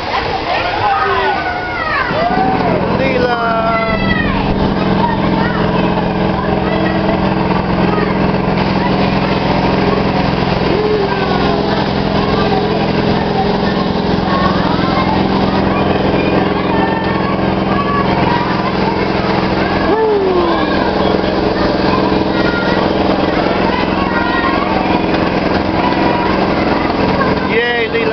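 Kiddie amusement ride's drive motor running with a steady, even drone that comes in about two seconds in and holds, under children's voices and shouts.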